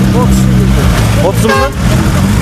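A vehicle engine idling with a steady low drone, with people's voices and short calls over it.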